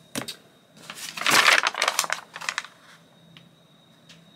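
Sheets of paper being picked up and handled on a desk: a single click, then about a second in a second or so of paper rustling mixed with light clicks.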